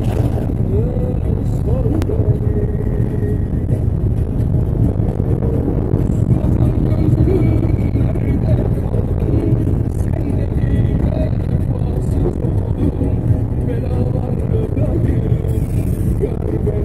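Steady low rumble of a moving road vehicle heard from inside its cabin, with faint, indistinct voices under it.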